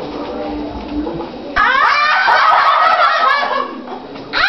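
A group of children's high voices shrieking and squealing together in a sudden loud outburst, starting about one and a half seconds in and lasting about two seconds.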